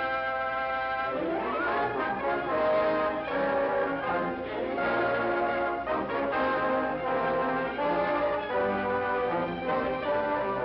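Orchestral film score with prominent brass: a rising sweep about a second in, then a run of held brass chords.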